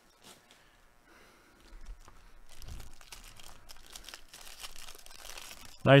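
Foil wrapper of a trading-card pack being torn open and crinkled. The crackly rustling starts about two seconds in and carries on to the end.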